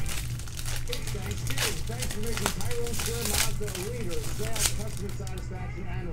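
Foil trading-card pack wrapper crinkling and tearing in the hands as the cards are pulled out, in irregular sharp crackles.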